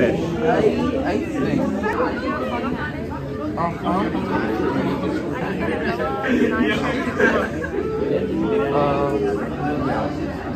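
Chatter: several people talking at once, overlapping conversations in a room, with no other sound standing out.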